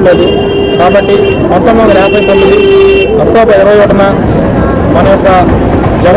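A vehicle horn gives two long honks, the first over about the first second and a half, the second from about two to three seconds in, over a man speaking.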